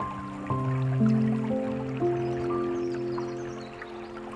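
Slow, gentle piano music: notes struck about every half second and left to ring and fade, over a faint trickling, dripping water sound.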